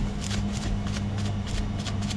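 Crumpled plastic cling wrap crinkling as it is dabbed again and again against a small part: a quick run of light crinkly taps, about six a second, applying the silver base coat in wrap painting. A steady low hum lies underneath.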